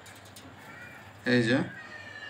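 A man's short spoken phrase about a second in, over low background noise with faint thin high tones.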